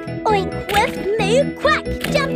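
Children's cartoon song: high, childlike character voices singing over a jingly, tinkling backing track.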